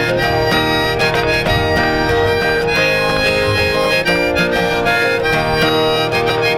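Harmonica in a neck rack played over a strummed acoustic guitar in an instrumental folk break, the harmonica holding long notes over steady strumming.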